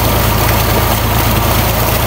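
Tubewell pump running, with a steady low hum under the rush of water gushing out of its outlet pipe.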